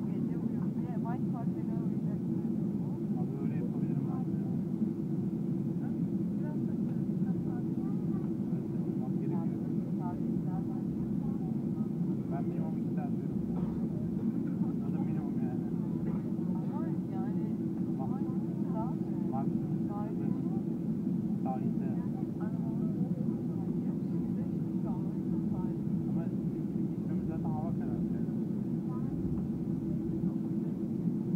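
Steady drone of a Boeing jet airliner's engines at taxi idle, heard from inside the passenger cabin, with a constant low hum and no rises or drops in level. Faint, indistinct passenger chatter sits over it.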